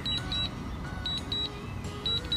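DJI Mavic Pro remote controller beeping in Return-to-Home mode: pairs of short high beeps, repeating about once a second, signalling that the drone is flying itself home.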